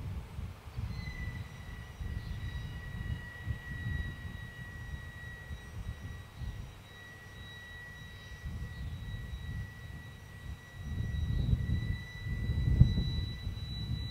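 Gusty low rumble of wind and sea on the microphone as the Dragon capsule comes down into the ocean, swelling louder near the end. A steady thin high-pitched tone runs over it from about a second in.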